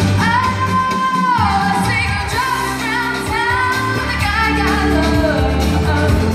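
A woman singing a pop song live into a microphone over a backing track with a steady bass line. She holds one long note near the start, then moves through shorter phrases.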